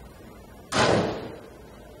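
A single sudden bang or thump, about two-thirds of a second in, that dies away over about half a second.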